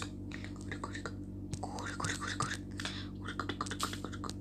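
Soft whispering with many small clicks, over a steady low hum.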